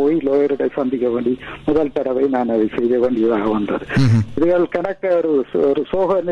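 Speech only: a man talking continuously in Tamil, with a thin, telephone-like sound.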